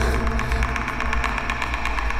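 Film suspense score: a deep low drone under a rapid, even ticking pulse.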